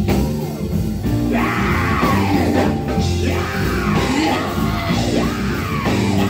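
Live gospel group singing over a band of electric bass guitar and drums, loud and continuous. The voices come in strongly about a second and a half in, sliding up and down in pitch.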